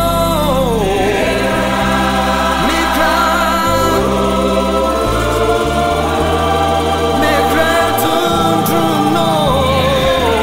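Gospel worship song: voices singing over instrumental backing with sustained bass notes.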